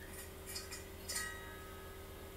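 A few faint, sharp clicks, four in about a second, the last one followed by a short ringing tone, over a steady low electrical hum.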